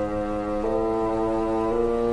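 Bassoon playing long held notes with a string orchestra, the notes changing twice, about half a second in and again near the end.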